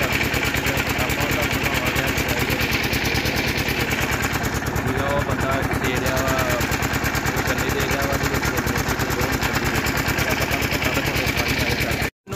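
Stationary diesel engine driving a sugarcane crusher, running steadily with a rapid, even beat of exhaust knocks.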